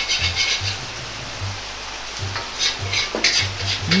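Minced garlic frying gently in oil in a wok over low heat: a soft sizzle, with a metal ladle stirring and scraping it around the pan. Background music with a steady low beat plays underneath.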